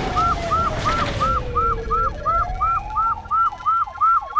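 Police siren sound effect: a fast yelp repeating about three times a second, over a slower wail that falls for about two seconds and then rises again.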